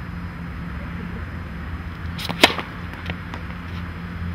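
Tennis serve: a quick racket swing ending in one sharp strike of the strings on the ball about halfway through, followed by a couple of fainter ticks, over a steady low hum.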